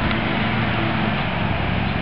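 Steady motor-vehicle noise: an even rushing sound over a low, constant engine hum.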